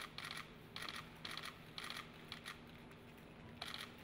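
Footsteps of hard-soled shoes on a stone floor: crisp clicks about two a second, over a faint steady hum.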